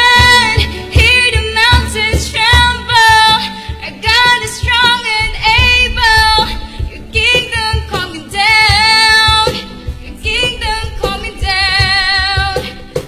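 A worship song: a female voice sings over a band backing with a steady low bass beat.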